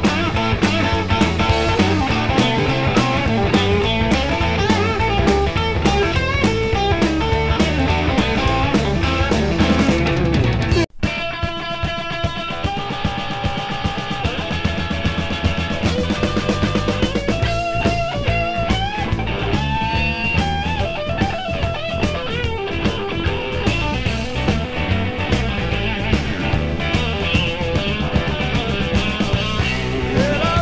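Blues band recording playing an instrumental passage, guitar over a drum beat, with lead notes bent in pitch. About eleven seconds in, the sound cuts out for an instant, and the band's texture changes after it.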